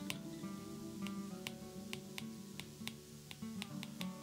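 Soft acoustic guitar background music, with light, irregular clicks and taps of an Apple Pencil tip on the iPad's glass screen as a word is handwritten.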